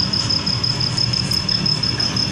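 A steady low hum like an idling engine, with a thin steady high whine above it.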